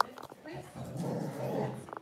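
Dog growling low for about a second, starting about halfway in, with a sharp click at the start. It is the growl of a leash-reactive dog, the first sign of reactivity toward the other dog.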